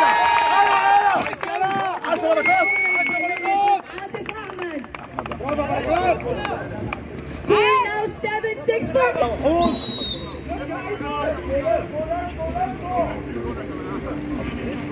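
Several people shouting and calling out over one another, voices overlapping throughout, as in spectators and players calling during a water polo game.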